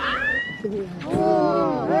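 A short rising squeal at the start, then about a second in a long, high-pitched, drawn-out vocal cry, like a wail.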